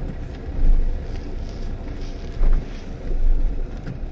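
Low rumble of a car driving, heard from inside the cabin, with wind buffeting the microphone in three louder swells.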